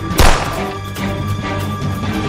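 A single loud gunshot sound effect about a quarter of a second in, sharp and brief, over dramatic background film music.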